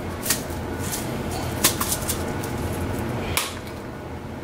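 A steady low hum with four short sharp clicks over it, two close together in the middle and the loudest near the end.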